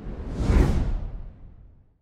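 A whoosh transition sound effect with a deep low end. It swells to a peak about half a second in and fades away over the next second.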